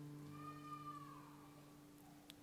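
Soft live band music playing quietly: a low note held steady, with a higher tone that bends up and slides back down about half a second in.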